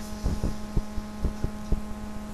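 Steady electrical hum with a row of overtones, with soft short thuds, about four or five a second, running through it.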